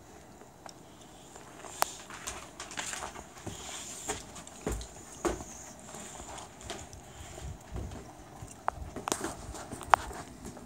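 Footsteps crunching through snow: an irregular run of crunches that starts about a second and a half in, with a few sharper clicks among them.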